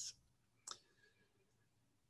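Near silence with one brief, sharp click a little under a second in.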